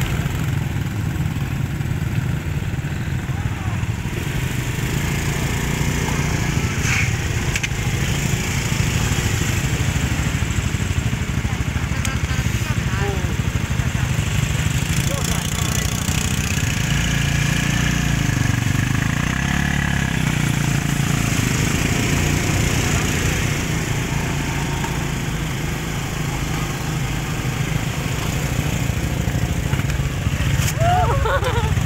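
Several small motorcycles running in a group, their engines giving a steady low hum. People talk faintly over the engines.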